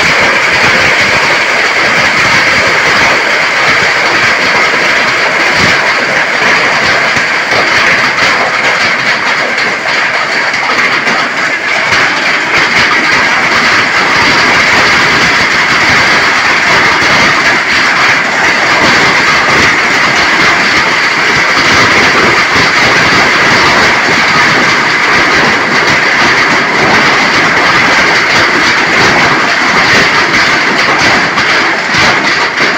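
Heavy rain pouring down, a loud, steady, dense patter that does not let up.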